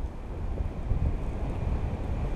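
Wind rushing over the camera microphone from the airflow of a tandem paraglider in flight: a steady, gusting rumble, heaviest in the low end.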